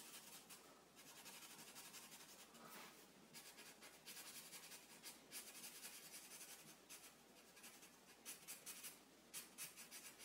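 Faint scratching of a black felt-tip marker on paper, worked back and forth in quick strokes to fill an area in solid black, with a few short pauses between runs of strokes.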